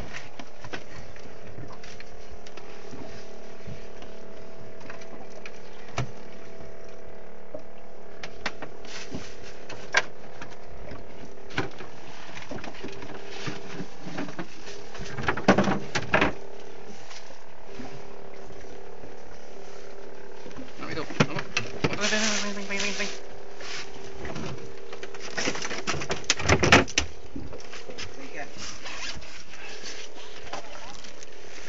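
Small fishing boat's engine running with a steady hum. Short louder bursts of voices and knocks come three times, in the middle and toward the end.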